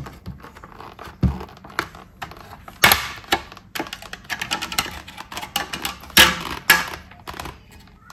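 Hard plastic clicking, creaking and scraping as the rear spoiler of an X-Lite X-803 helmet is levered and wiggled free of the shell by hand: an irregular run of clicks and knocks, the loudest about three and six seconds in.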